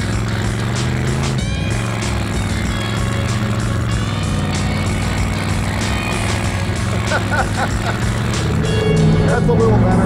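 The 500-cubic-inch Cadillac V8 in a 1973 AMC Gremlin revving as the car spins its rear tyres in dirt doing donuts, with background music mixed over it. Voices shout and laugh near the end.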